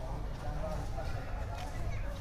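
Faint, indistinct voices over a steady low rumble, with a few short ticks.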